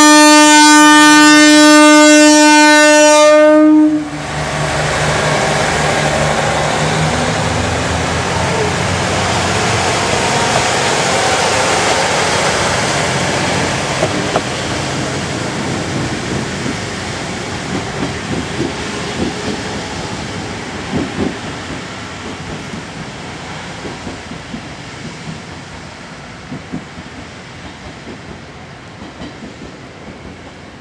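KiHa 40-series diesel railcar sounding a long blast on its horn, which cuts off about four seconds in. Its diesel engine then throttles up as the two-car train pulls away, and its wheels click over the rail joints, fading as it moves off into the distance.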